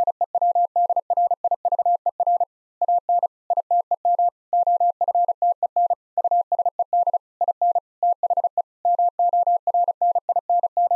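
Morse code sent at 35 words per minute as a single steady sidetone-style beep keyed rapidly on and off, with short and long elements grouped into letters with brief gaps between them, spelling out the word "screwdriver".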